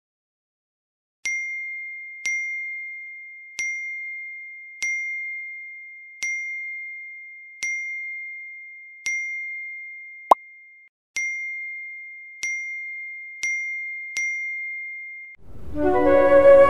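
Phone chat-message notification chime: a single-pitched ding repeated about eleven times at roughly one a second, each ringing out, with a short sharp pop about two-thirds of the way through. Music starts just before the end.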